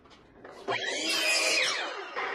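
Sliding compound miter saw starting about two-thirds of a second in and crosscutting a pine board, then winding down with a falling whine near the end.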